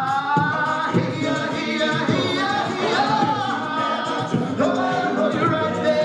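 Male a cappella group singing live: stacked voices hold and shift sustained chords under a lead voice, with vocal percussion keeping a steady beat.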